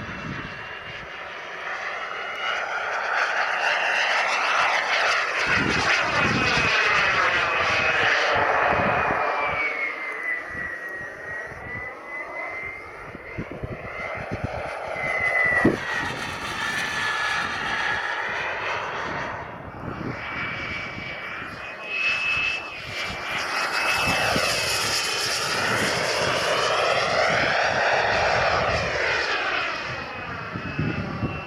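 Miniature gas turbine of a radio-controlled model jet whining as the plane flies overhead. The high whine swells and fades twice as the plane passes, and slides down in pitch about halfway through.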